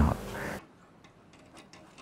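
Faint, light ticking clicks, several a second at uneven spacing, following the tail end of a man's voice.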